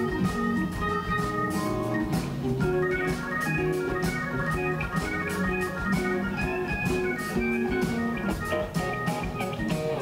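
Live band music led by a Hammond SK1 stage keyboard playing held organ chords and lines, over drums keeping a steady beat.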